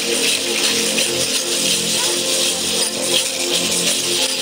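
Music accompanying a costumed dance: steady held tones under a constant bright rattling of shakers or rattles.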